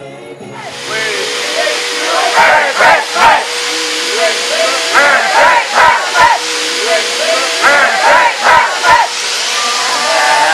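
A loud, steady hiss begins about half a second in, with a faint steady tone under it. Over it, people's voices call out in three short groups of rising and falling cries.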